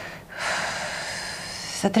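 A woman's audible in-breath, a hissy intake lasting about a second and a half, taken in a pause mid-sentence before she starts speaking again near the end.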